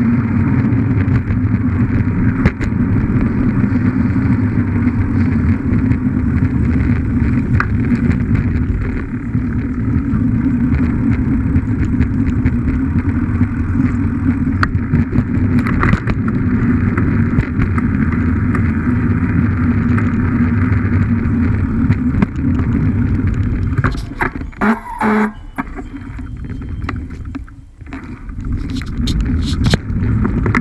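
Steady rush of wind on a bicycle-mounted camera, with the rumble of road-bike tyres on pavement. The noise dips and breaks up for a few seconds near the end, with a few sharp clicks.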